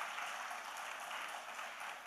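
Audience applauding steadily: many people clapping at once.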